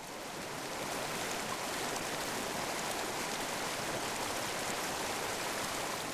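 Steady rushing sound of running water, fading in at the start and then holding level, with no distinct drips.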